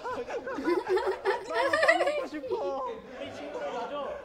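Several young men talking over one another in Korean, with bits of laughter.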